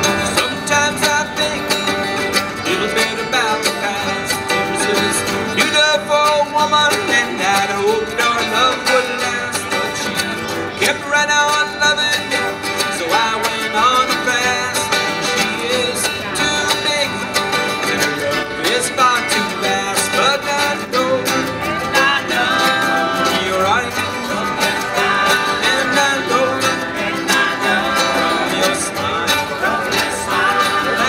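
Live acoustic bluegrass band playing an up-tempo tune: strummed acoustic guitars and a picked banjo, with a washboard scraped for rhythm.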